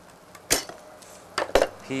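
Three short, sharp clicks and knocks from gear being handled on a wooden workbench: one about half a second in, then two close together about a second and a half in.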